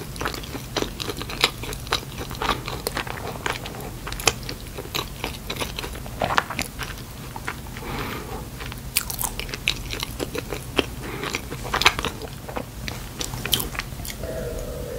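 Close-miked chewing of a donut, with many small sharp mouth clicks.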